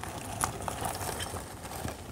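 A plastic bag rustling faintly as it is pulled out of a hole in packed soil, with a few small ticks.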